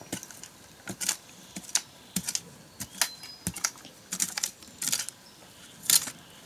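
Hand digging: a small tool scraping and striking dry earth in short, irregular strokes, about two a second, with a few longer scrapes and the loudest stroke near the end.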